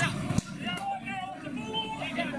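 Indistinct voices calling across an open sports field. About half a second in there is a brief knock, and after it the low background rumble drops away.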